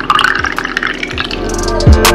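Rice water pouring through a plastic funnel into a plastic spray bottle, then background music with a drum beat starting about two-thirds of the way through.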